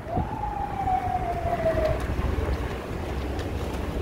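A single siren wail, about two seconds long, sliding slowly down in pitch before it stops, over a steady low rumble from the moving vehicle.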